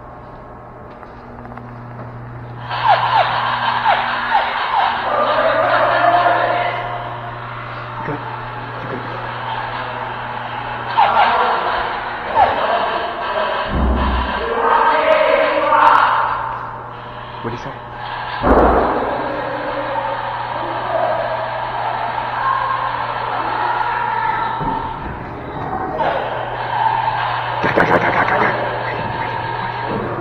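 Music and raised voices echoing in a large concrete building, over a steady low hum. Two heavy thuds come about 14 and 18 seconds in.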